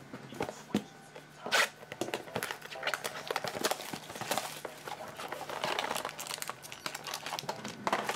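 Cellophane shrink-wrap being ripped and crinkled off a sealed Panini Contenders Optic football card box as it is opened. There is a sharp rip about a second and a half in, then steady crackling and rustling.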